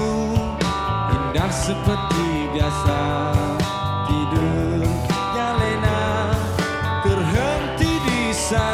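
Live rock band playing loudly with electric guitars, bass, drums and keyboards over a steady drum beat, and a male lead singer singing.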